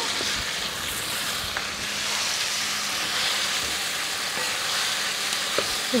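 Steady sizzling of a tomato-onion masala frying in oil in a kadai, as pureed mustard greens are stirred into it with a wooden spatula.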